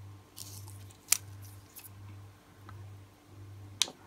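A thin sheet of holographic nail transfer foil rustling and crinkling as it is handled, with a sharp crackle about a second in and a louder one near the end.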